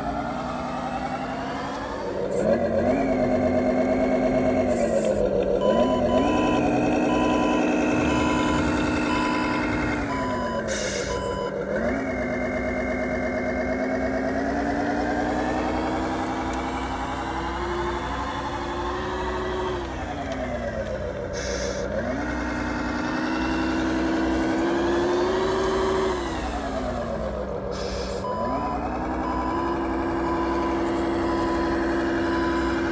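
Simulated diesel truck engine sound played through the Tamiya King Hauler RC truck's ESP32 sound controller, rising and falling in pitch as the throttle is opened and eased off, several times over. A reversing-alarm beep, about one and a half a second, sounds about six seconds in for some four seconds and starts again near the end.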